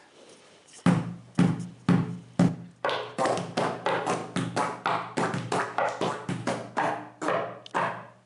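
Hands drumming on a wooden tabletop. About a second in come four heavy thumps roughly half a second apart, then a faster steady rhythm of about four strikes a second that stops just before the end.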